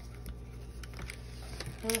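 Faint clicks and light handling noise of a small paperboard box being turned and opened by hand, over a steady low hum.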